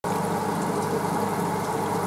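Aquarium equipment running: a steady hum with a continuous wash of moving, bubbling water.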